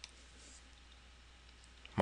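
A single faint click right at the start, then quiet room tone with a steady low hum and faint hiss.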